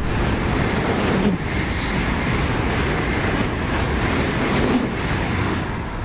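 ICE high-speed train passing at speed: a steady rushing of wheels on rail and air, easing off slightly near the end as the last cars go by.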